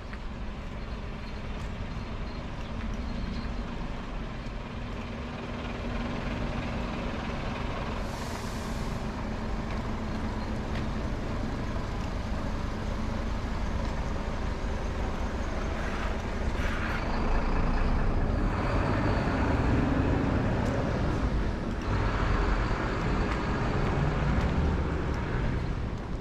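City road traffic: vehicles passing on the street, with a short high hiss about eight seconds in and two louder vehicle passes in the second half.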